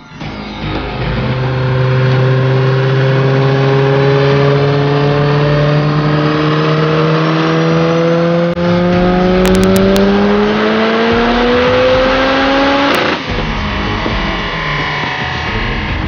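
Turbocharged 1.8-litre 16-valve VW four-cylinder making a full-throttle dyno pull on a chassis dyno, its note rising steadily in pitch through the revs for about twelve seconds. The pull ends abruptly with a sharp crack about thirteen seconds in, and the engine then winds down.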